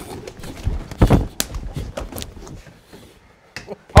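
Scuffle at a desk: a cluster of heavy thumps about a second in, then a few sharp knocks and taps as bodies and hands bump the table, with a loud knock at the very end.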